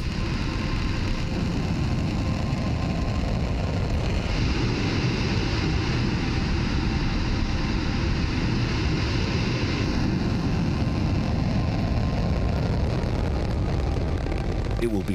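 Ariane 5 rocket engines firing at ignition and liftoff: a loud, steady, deep rushing noise of exhaust. The noise grows hissier about four seconds in and eases back a few seconds later.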